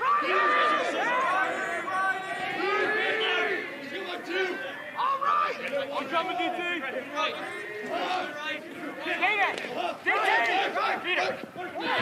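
Many voices shouting and calling out at once during live lacrosse play, overlapping throughout.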